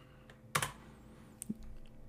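A few clicks on a computer keyboard while a value is entered into a settings field: one sharp click about half a second in, then a couple of fainter ticks.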